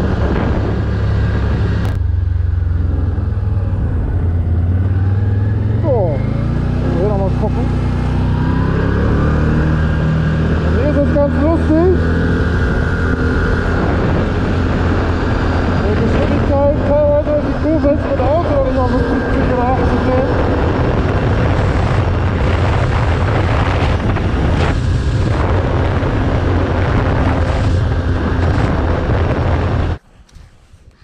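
Can-Am Outlander Max 1000 XTP quad's V-twin engine running while riding, its pitch climbing as it speeds up a few seconds in, with headwind rushing over the helmet-mounted microphone.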